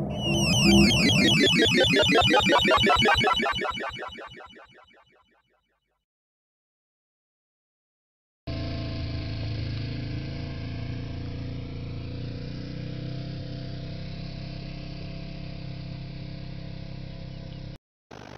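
Science-fiction teleport (Transmat) sound effect: a loud, rapidly pulsing, warbling electronic sound that fades away over about five seconds, followed by a few seconds of dead silence. About eight and a half seconds in, a steady droning ambient music bed begins.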